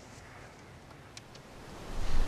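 Quiet, steady background ambience with two faint short ticks a little over a second in.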